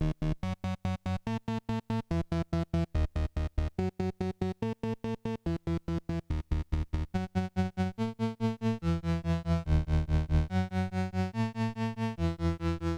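YM3812 FM synthesis chip voice in a Eurorack module, played as a voltage-controlled oscillator through an envelope and VCA: a fast sequence of short gated synth notes, about five a second, stepping through changing pitches. About eight seconds in, the notes lengthen and run together into a fuller, sustained pattern.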